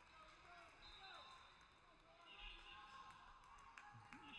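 Near silence: faint, distant voices of people in a gymnasium between rallies.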